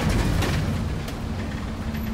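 Bus cabin noise while driving: a steady low engine and road rumble, with a few light rattles and a faint steady hum coming in during the second half.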